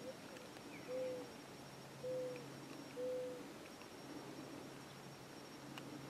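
Three short, low hooting notes about a second apart, each slightly arched in pitch, over a faint steady hum.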